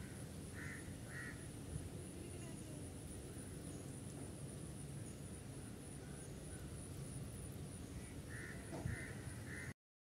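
Faint steady background noise with a bird's short harsh calls, two about a second in and three more near the end. The sound cuts off abruptly just before the end.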